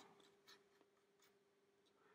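Near silence: a stiff old paintbrush scrubbing faintly over the plastic side of a model wagon, a few light scratchy ticks over a faint steady hum.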